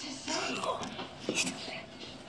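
Quiet whispered speech, low and breathy, with a few hissing sounds.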